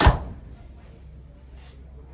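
Mathews Phase 4 compound bow, set at 65 pounds draw weight, being shot: one sharp, loud crack as the string is released and the arrow leaves, dying away within about a third of a second.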